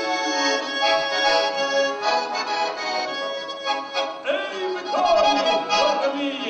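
Russian garmon (button accordion) playing an instrumental passage of a folk song: a reedy melody over held chords, with the notes changing throughout.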